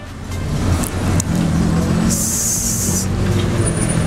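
Street traffic: a heavy vehicle's engine running with a steady low rumble, and a sharp hiss lasting about a second, about two seconds in.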